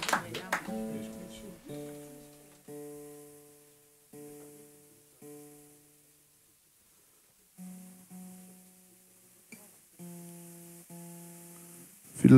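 Applause dies away at the start. Then a hollow-neck lap-style acoustic guitar is picked in about eight separate chords or notes, each left to ring out, some repeated at the same pitch, with pauses between.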